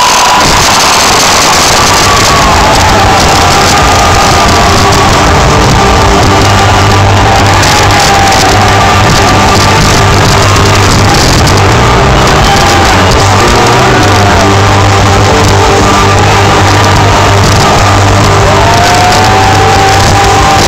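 Live rock band playing loudly: drums, bass and electric guitar, with the level pinned near full scale.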